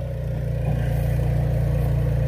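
A small motor running steadily with a low, even hum, getting a little stronger about a third of the way in.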